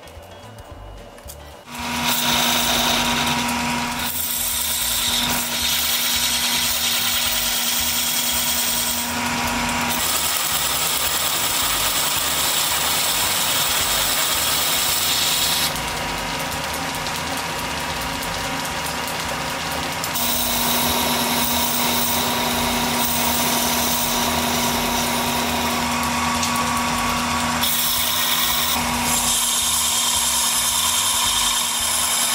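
An engine lathe running and a steel tool bit cutting a spinning ash wagon-hub blank: a steady motor hum under loud hissing chip noise, starting suddenly about two seconds in. The cutting sound changes abruptly several times.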